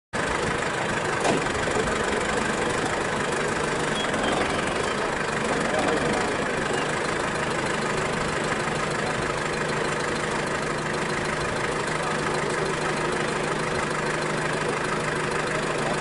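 A vehicle engine idling steadily, with people's voices faint at times.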